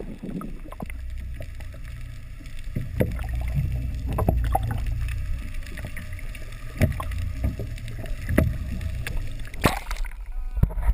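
Muffled underwater sound picked up through a GoPro Hero1's waterproof housing: a steady low rumble with scattered short knocks. Near the end comes a loud rush of water as the camera breaks the surface.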